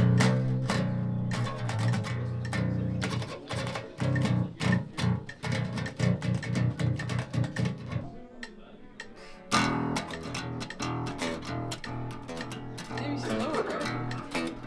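Six-string fanned-fret Dingwall electric bass played through an amp: low, choppy djent-style riffs of rapid staccato notes. The playing thins out about eight seconds in, then picks up again.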